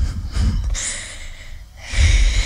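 A young woman's breathy, laughing breaths and snort-like sounds close into a handheld microphone, with no steady beatbox rhythm. A longer hissing breath comes about a second in.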